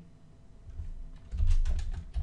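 Typing on a computer keyboard: a quick run of key clicks with dull thuds, starting a little under a second in and getting louder.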